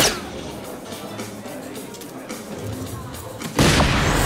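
Electronic soft-tip dart machine hit sounds: a sharp short hit with a quick falling zap as a dart scores a single 20 at the start, then, about three and a half seconds in, a loud blast lasting about a second with rising sweeps as a dart lands in the triple 20.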